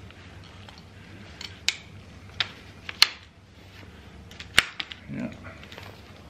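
Shock-corded poles of a lightweight folding camp chair frame clicking and knocking as they are handled and slotted into the frame's hubs: a handful of sharp, separate clicks, the loudest about halfway through.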